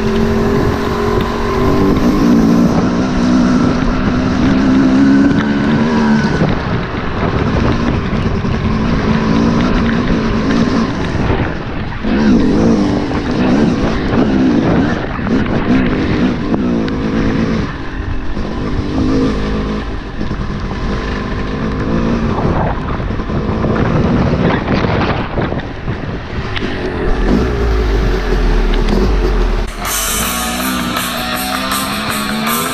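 Yamaha YZ250 two-stroke dirt bike engine running under way, its pitch rising and falling as the throttle opens and closes, with steady rushing noise, heard from a camera on the moving bike.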